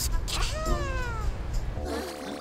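A cartoon character's long, cat-like vocal cry falling in pitch, over a steady low rumble from a room full of electric fans and air-conditioning units.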